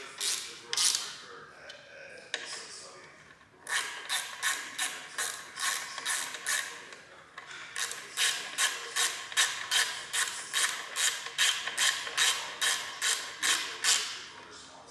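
Ratchet wrench worked back and forth, tightening a fastener during reassembly: a few scattered clicks, then from about four seconds in a steady run of clicking strokes at about three a second.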